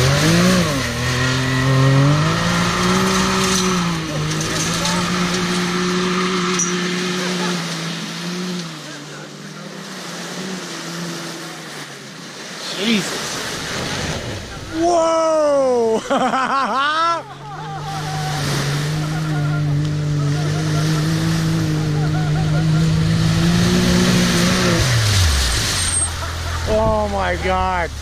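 Can-Am Maverick X3 side-by-side's engine revving hard as it runs through lake surf, over a rush of water spray. The engine note climbs at the start and holds high. It eases off, then rises and falls quickly several times about halfway through, holds high and steady again, and drops off near the end.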